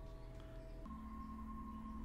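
Faint, tense background music of steady held tones over a low drone, shifting to a new pair of held notes just under a second in.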